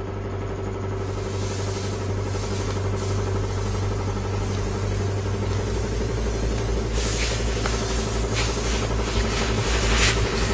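Low, steady suspense drone from a horror film score, slowly growing louder, with a hissing texture that swells about seven seconds in.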